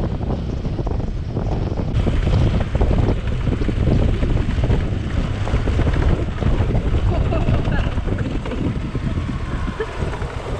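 Steady wind rush on the microphone over the running single-cylinder engine of a KTM 390 Adventure motorcycle riding along a dirt track.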